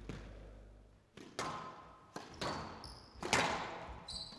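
Squash rally: a squash ball cracking off rackets and the court walls, about five sharp hits starting about a second in, with shoes squeaking on the court floor between the hits.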